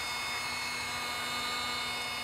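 Small battery-powered handheld sensor vacuum from a DSLR cleaning kit running steadily with a constant whir and a faint steady hum, its brush tip working dust from around the edges of the camera's mirror chamber.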